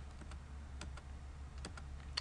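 Computer keyboard typing: a handful of separate keystrokes, spaced irregularly, over a low steady hum.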